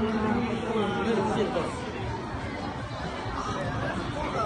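Chatter of a crowd of people talking around the camera, several voices at once, with one voice clearer in the first second or so.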